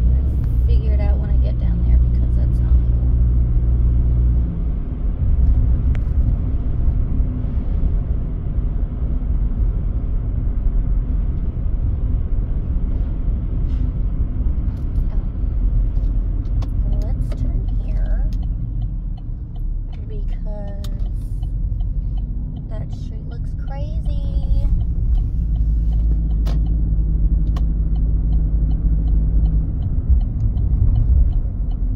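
Engine and road noise inside a moving car's cabin, a steady low rumble, with a steady engine hum at the start and again near the end.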